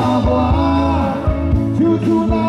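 Live band music from a stage PA: an upbeat rock-style groove over bass, with a steady drum beat.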